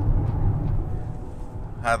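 Steady low rumble of a 2015 Hyundai Sonata's engine and tyres, heard from inside the cabin while it is driven at speed, easing slightly in the second half.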